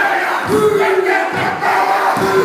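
A group of men chanting and shouting a Māori haka in unison, loud and forceful. A couple of heavy thumps come from stamping feet and slapped chests.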